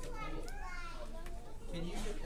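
Young children's voices chattering and calling out over one another.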